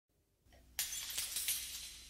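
Glass shattering: a sudden crash a little under a second in, followed by a few more sharp breaking, tinkling hits that fade away.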